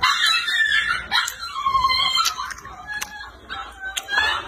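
A dog whining and yelping in high-pitched, falling cries, begging for food: a loud cry at the start, a long falling whine about a second in, and fainter whines near the end.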